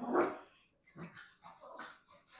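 A woman coughing: one strong cough right at the start, followed by a few quieter, smaller coughs.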